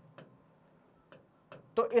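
Three light ticks of a stylus pen on an interactive whiteboard screen while a word is handwritten, between near-silent gaps; a man's voice starts near the end.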